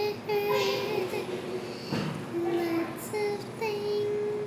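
A young girl singing a slow tune in held notes, with a short pause for breath about halfway through and a long held note near the end.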